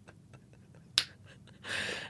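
Quiet room tone with one sharp click about halfway through, then a soft rush of noise near the end.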